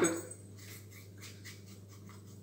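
Quiet stretch: a steady low hum with a few faint small handling noises.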